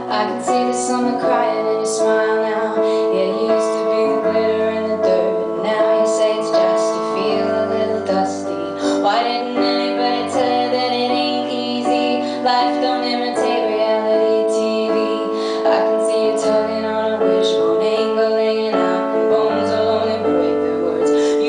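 A woman singing a slow, lullaby-like ballad live to piano accompaniment, the piano holding sustained chords over slowly changing bass notes.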